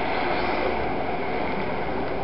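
Steady, even background noise with a low rumble and hiss, with no distinct events, as picked up by an old camcorder's microphone outdoors.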